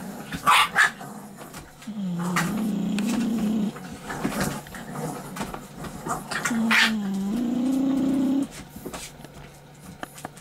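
Bulldog puppies play-fighting: two sharp yaps right at the start, then a long growl about two seconds in, and another long growl with a yap from about six and a half to eight and a half seconds.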